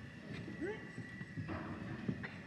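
A few faint, hollow knocks of plywood panels being slotted together into a cart's side walls, over low background chatter of a large hall.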